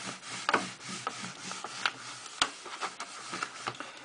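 Marker writing being wiped off a whiteboard by hand: a run of uneven rubbing strokes across the board, with a few light knocks and one sharper knock a little past halfway.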